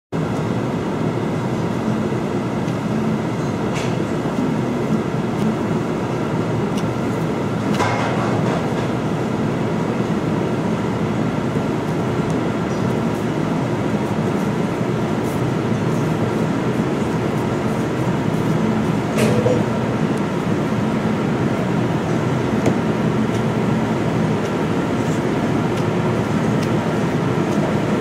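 Steady machine drone of commercial kitchen ventilation or refrigeration, with a faint even hum. A few small clicks come from hands handling rice and fish.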